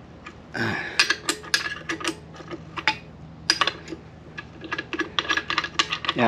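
Irregular metallic clicks and knocks as a B-series transmission case is worked by hand against a modified F23 engine block at the bell-housing flange, metal tapping on metal while checking the fit.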